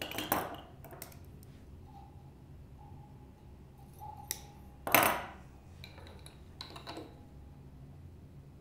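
Faint metallic clicks and scrapes of a steel guitar string, the high E, being handled and threaded into a Fender Jaguar's slotted tuning post. There is a sharp click about four seconds in and a louder short rasp just after it.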